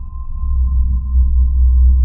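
Suspense sound-design drone: a deep low rumble that swells steadily louder, with a thin steady high tone held above it.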